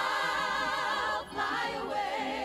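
A choir singing, several voices holding sustained notes with vibrato, with a short break about a second and a quarter in before the singing carries on.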